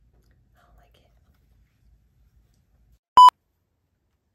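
A single short, loud electronic beep, one steady high tone, about three seconds in after near silence.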